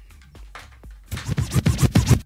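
DJ turntable scratching in a station jingle: faint for the first second, then a quick run of loud scratches.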